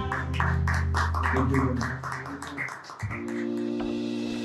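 Live acoustic guitar with singing, a held low chord under quick strummed strokes about four a second, stops near three seconds in. Then a steady held chord of background music begins.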